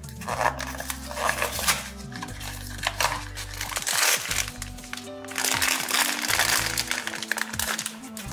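A silver foil blind-box bag crinkled and pulled open by hand, in several bursts of rustling, over background music.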